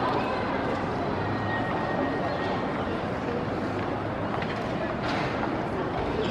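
Indistinct background chatter of spectators over a steady outdoor hubbub at an athletics track, with no starting gun yet.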